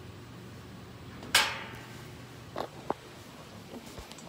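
A single loud metallic clang with a short ringing tail about a second in, then two lighter knocks a little later, over a steady low hum.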